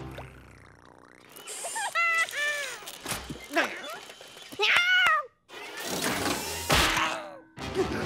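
A cartoon cat's voice making short, strained meow-like cries, several in a row with pitch that bends up and down, over a cartoon music score. A burst of rushing noise comes about six seconds in.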